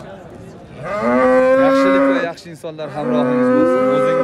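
A bull mooing loudly twice: a long, steady call lasting about a second and a half starts about a second in, and a second one begins about three seconds in.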